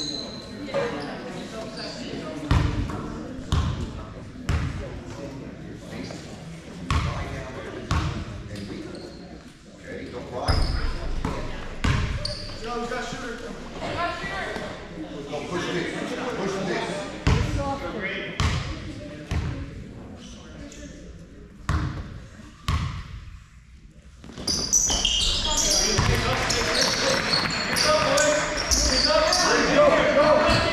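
Basketball bounced a few times on a hardwood gym floor, each bounce a single thud with an echo in the hall, under steady chatter of voices. From about 25 s in it gets much louder and busier, with running on the court and voices.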